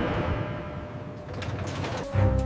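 Busy warehouse background noise: a steady, noisy rumble of machinery and handling, with a few light clatters about one and a half seconds in.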